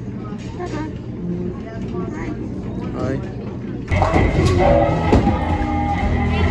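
Restaurant dining-room background: a low steady hum with faint distant chatter. About four seconds in it cuts suddenly to louder music over crowd noise.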